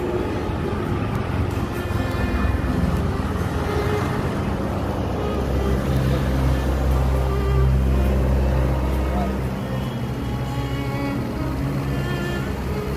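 Background music over a vehicle engine running close by, with a deep engine drone that grows louder from about five to ten seconds in, amid road traffic.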